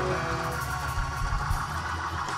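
Live worship band music between sung lines: sustained chords over a steady low bass, with a few drum beats.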